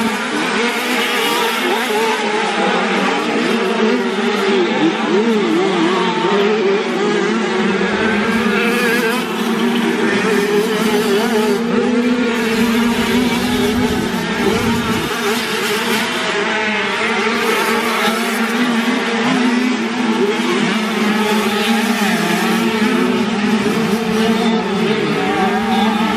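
Several classic 50cc two-stroke motocross bikes racing, their small engines running hard at high revs without a pause. The pitches of the overlapping engines rise and fall as the riders work the throttle.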